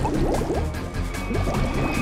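Underwater bubbling from scuba divers' exhaled air: many quick, rising bloops, several a second, over dramatic background music with a low drone.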